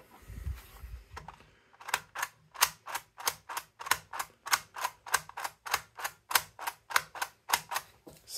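3D-printed plastic mechanical seven-segment counter being cycled by repeated presses of its push button, the ratchet mechanism clicking with each press as the digit advances. After a low handling rumble as the unit is turned over, a steady run of sharp clicks sets in about two seconds in, roughly three a second.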